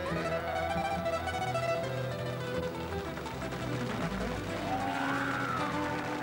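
Acoustic folk trio of two acoustic guitars and an upright double bass playing the instrumental close of an up-tempo song.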